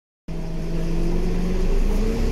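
Scania K320UB bus's five-cylinder diesel engine running, heard from inside the passenger saloon: a steady low drone that starts abruptly just after the beginning and rises slightly in pitch near the end.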